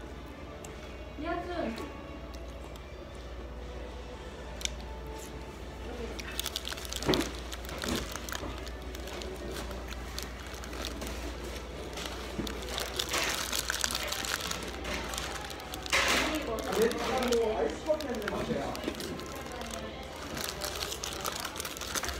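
Paper burger wrapper crinkling in irregular bursts as a wrapped burger is handled and bitten, loudest in the second half, over background music and voices.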